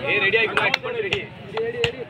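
A man's voice chanting in a held, wavering tone, typical of a kabaddi raider's 'kabaddi' chant during a raid, with four sharp claps or slaps over the top.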